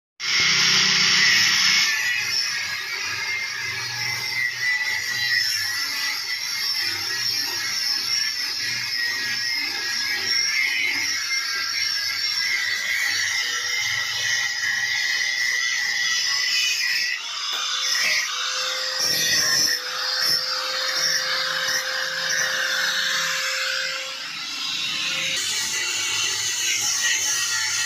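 Electric angle grinder with a thin cut-off disc cutting through a steel-tube bicycle handlebar clamped in a vise: a steady high whine with the grating hiss of the disc biting into the metal.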